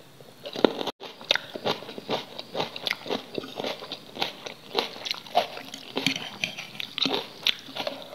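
Close-miked chewing of a bitten raw yellow chili pepper: a dense run of small, crisp, wet crunches and clicks, with a brief cut-out about a second in.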